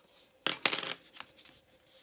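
Two sharp clicks with a brief rattle about half a second in, from a Sharpie marker and paper being handled on a desk.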